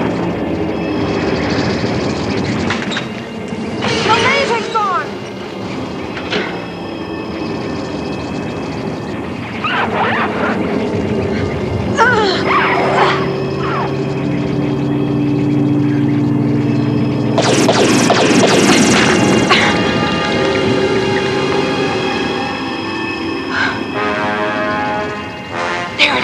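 Cartoon soundtrack: background music with held notes, laid over sound effects, with a loud noisy stretch about two-thirds of the way through.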